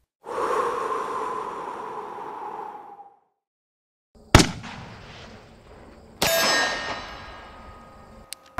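Three metallic clangs, each followed by ringing tones that die away: a long ring starting just after the start and fading over nearly three seconds, a sharp loud clang a little after four seconds, and another ringing clang just past six seconds.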